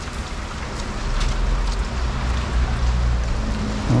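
Heavy rain pouring onto a wet concrete yard, a steady hiss of drops, with a low rumble underneath that grows stronger about a second in.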